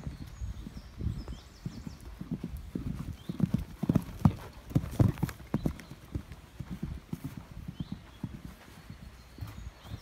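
Hoofbeats of a horse cantering on a sand arena: a run of dull thuds that grows loudest as the horse passes close, about four to five seconds in, then fades as it moves away.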